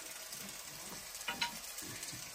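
Sliced potatoes frying in oil in a wok over a wood fire, a steady sizzle, with a few light clicks a little past the middle.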